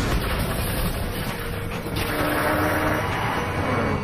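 Batpod motorcycle in film footage running at speed: a dense, steady rush of engine and motion noise, with a short steady tone about halfway through.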